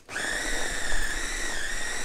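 Small electric food chopper switched on and running with a steady high-pitched motor whine.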